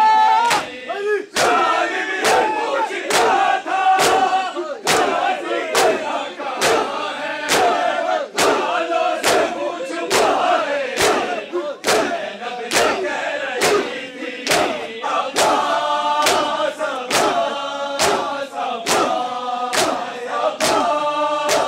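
A crowd of men chanting a noha together while beating their chests in unison: sharp, echoing hand slaps on bare chests keep an even beat of about one a second under the loud massed voices.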